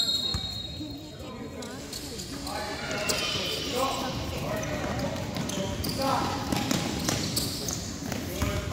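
Indoor basketball game in a gym hall: a basketball bouncing on the hardwood floor, with players' and spectators' voices echoing in the large room.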